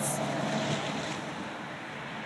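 Steady rushing noise of strong offshore wind across the phone's microphone, mixed with surf, easing slightly toward the end.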